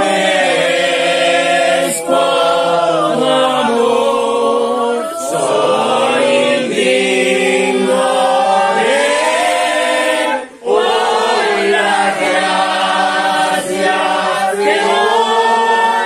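A small group of worshippers singing together without instruments, in long held phrases, with a brief break between phrases about ten seconds in.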